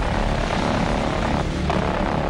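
A dramatic background music bed for a news report: a steady low drone under a broad rushing noise, with no narration.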